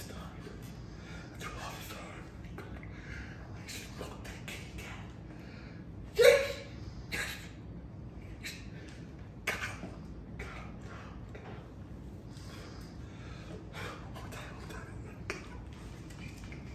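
A man laughing in short, separate bursts, the loudest about six seconds in and another a few seconds later.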